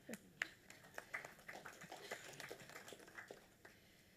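Faint scattered light clicks and taps with faint off-microphone voices, very quiet overall.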